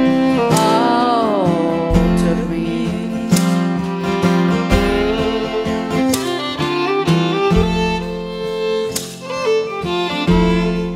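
Instrumental break of a live country-folk song: a fiddle plays the melody over a strummed acoustic guitar, with a falling slide about a second in.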